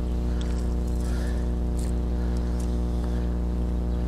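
A steady low hum with a stack of evenly spaced overtones, holding one pitch and level throughout, with a few faint brief clicks over it.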